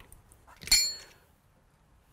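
A single sharp metallic clink from an adjustable spanner on the brass manifold fittings, with a brief high ring, about two-thirds of a second in.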